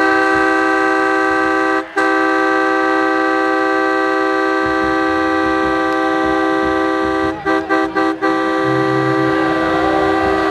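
A multi-note train horn sounding one loud, steady chord throughout, cut off briefly about two seconds in and three times in quick succession between seven and eight seconds in.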